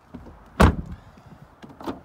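A Ford Focus rear door being shut: one loud thud about half a second in, followed by a smaller knock near the end.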